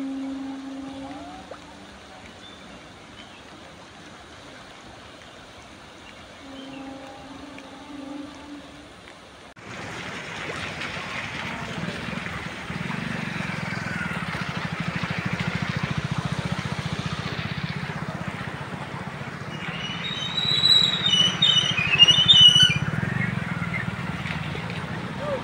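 Floodwater flowing: a quieter rush at first, then, about ten seconds in, a louder, steady rush of muddy water racing down a concrete-lined channel. A few high chirps sound near the end.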